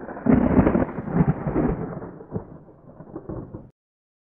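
A thunder-like rumble sound effect on an outro title. It swells loudly about a third of a second in, fades away, and cuts off suddenly just before the end.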